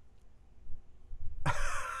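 A man's breathy laugh bursting out about one and a half seconds in, after a quiet pause.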